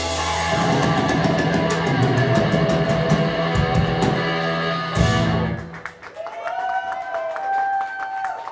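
Live punk rock band with distorted electric guitar and drum kit playing the last bars of a song, ending on a final hit about five seconds in. After that a sustained guitar tone rings on to the end.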